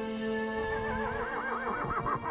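A horse whinnying, one long quavering call starting about a third of the way in, over background music with held notes.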